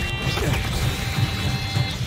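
Dramatic film score with a heavy, dense low rumble and several high held tones over it.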